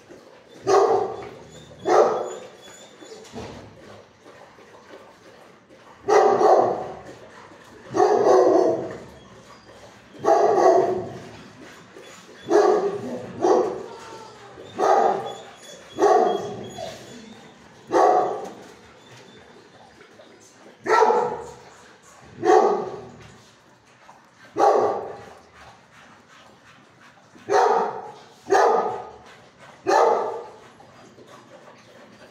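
A dog barking in a shelter kennel: about fifteen loud single barks, one every one to three seconds, each trailing off in echo from the hard kennel walls.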